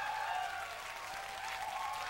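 Concert audience applauding, with a few faint voices calling out.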